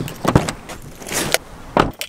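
Car door opening and shutting, then keys jangling at the ignition: a series of sharp clicks and knocks, the loudest about a third of a second in and near the end.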